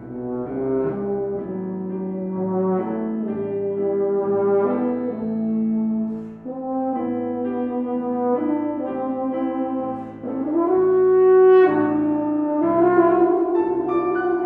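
Euphonium playing a phrase of held, connected notes over piano accompaniment in a classical concerto. About ten seconds in it glides upward into a loud, sustained high note, and near the end it holds a note with vibrato.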